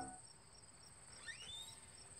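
Faint insects chirping, a regular high pulse about three times a second over a steady high whine, with one short rising chirp about a second and a half in. The tail of music dies away at the start.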